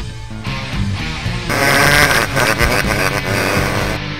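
Background music with a character's voice laughing over it from about halfway through, a gleeful, villainous 'heh heh heh'.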